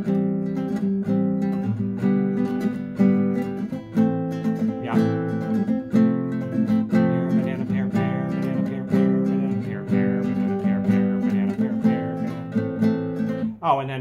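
Nylon-string classical guitar strummed in a steady, repeated strum pattern, changing chords as it goes.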